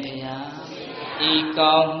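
A Buddhist monk's voice chanting in a sing-song recitation, with drawn-out syllables held on steady notes. It is loudest near the end.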